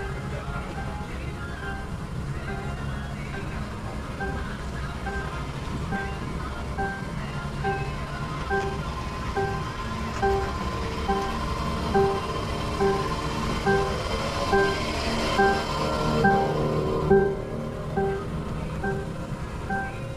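Background music: short repeating notes about twice a second over a steady low backing, getting louder toward the end.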